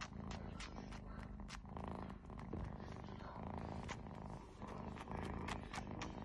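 Ginger kitten purring steadily and faintly, a low pulsing rumble, with soft scattered clicks over it.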